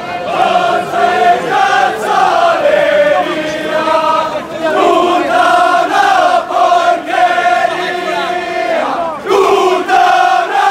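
Large crowd of men singing a contrada song in unison, loud and chant-like, the tune held in long notes with short breaks between phrases.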